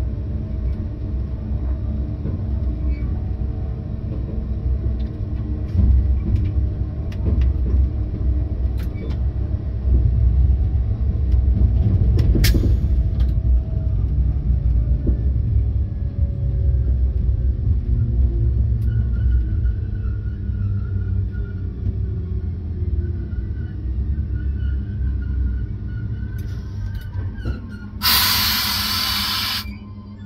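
Steady low rumble of a BB 22200 electric locomotive rolling over the track, heard from inside its cab, with scattered sharp clicks from rail joints and a faint whine that slowly falls in pitch. Near the end a loud hiss of air lasts about two seconds.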